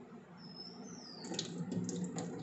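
Faint handling of whole raw thooli fish in a steel bowl: a run of short clicks and soft wet rubs starting a little over a second in as the fish are shifted. A thin high tone slides down in pitch about half a second in.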